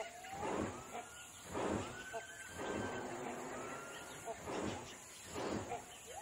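Great hornbill wingbeats in flight: a whoosh about once a second, loud because the bird lacks underwing covert feathers and air rushes through its flight feathers.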